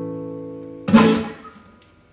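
Nylon-string classical guitar: a chord left ringing and fading away, then one last strummed chord about a second in that dies out quickly, closing the song.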